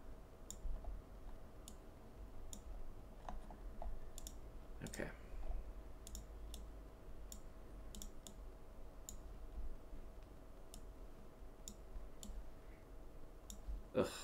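Light, irregular clicks from a computer pointing device, about one or two a second, as page contents are selected and dragged on screen, over a faint steady electrical hum.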